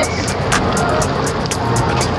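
Background music with a quick steady beat, laid over a low rumbling noise of rushing water and wind from a moving river raft.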